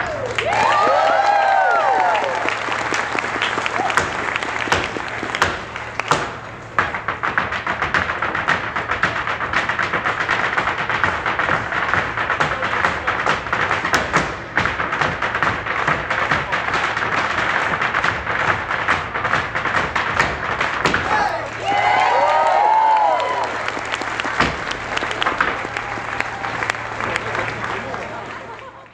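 Irish hard-shoe step dancing by a group of dancers: fast, dense clattering of heel and toe strikes on the stage. Shouts and whoops break in about a second in and again around three-quarters of the way through.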